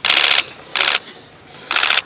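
Three short bursts of rapid clicking, each about a third of a second long, from camera shutters firing in burst mode.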